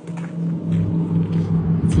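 A motor vehicle engine idling, heard as a steady low hum.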